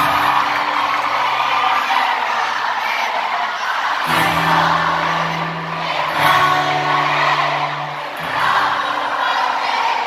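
Live pop-rock band playing a passage without lead vocals, sustained bass and keyboard chords changing every couple of seconds, with the crowd cheering over it.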